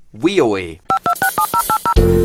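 Telephone touch-tone (DTMF) keypad dialing: a quick run of about eight short two-tone beeps in the second half, after a brief spoken word.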